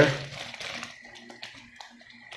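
Soft crinkling of the plastic bags around model-kit runners, with small scattered clicks of plastic as the bagged sprues are handled and moved.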